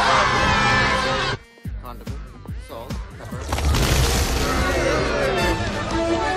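Film trailer soundtrack: music with a panicked crowd shouting, breaking off abruptly about a second and a half in. After a quieter stretch, loud crashing noise with the music returns at about three and a half seconds.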